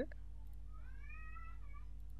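Steady low hum with one faint high-pitched call in the middle, about a second long, that rises and then falls.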